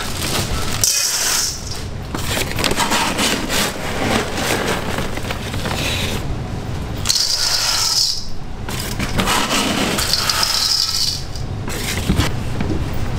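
Pearl sugar scooped from a bag and poured into a stainless steel bowl, the hard granules rattling against the metal in three bursts.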